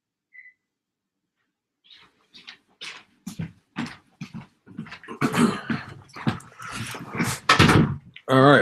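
A person returning to the computer: footsteps and knocks grow louder from about two seconds in, ending in a heavy thump as he drops into the chair. A brief high beep sounds once, about half a second in.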